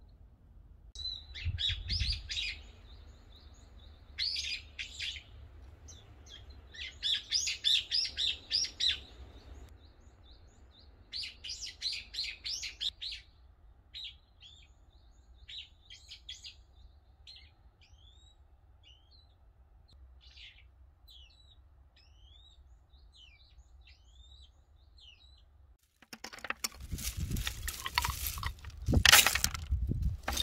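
Small birds singing: quick bursts of high chirps and trills, then scattered single chirps. Near the end a sudden loud rough noise with sharp knocks takes over.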